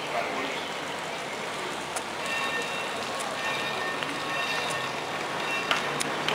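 Street ambience in a narrow pedestrian lane: background chatter of passers-by and a general outdoor hubbub. Faint steady tones come and go from about two seconds in, and a few sharp clicks are heard, the loudest near the end.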